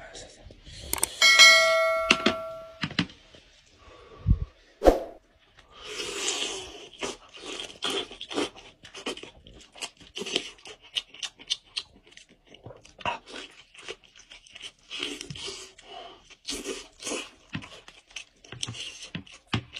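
A bell-like notification chime from a subscribe-button animation, ringing for about a second and a half near the start. Then close-miked eating of goat head meat: meat pulled apart by hand and chewed, heard as many short, wet clicks and smacks at an irregular pace.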